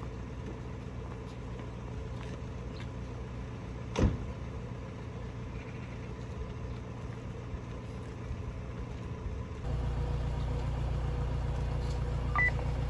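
A vehicle engine idling steadily, a low even hum, with one sharp knock about four seconds in. About ten seconds in, the hum steps up louder and deeper.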